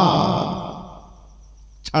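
A man's chanted phrase through a microphone trails off into a breathy exhale that fades over about a second. There is a sharp intake of breath near the end, just before he speaks again.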